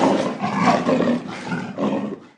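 Lion roar sound effect: a long roar that swells and falls, with a brief last surge near the end.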